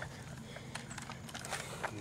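Faint rustling with scattered small crackles and ticks from a person moving about with the camera over twigs and leaf litter.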